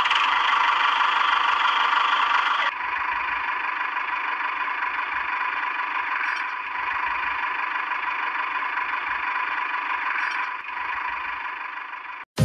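Small electric motor and gearbox of a homemade toy tractor running steadily with a buzzing whine, a little quieter after a cut about three seconds in.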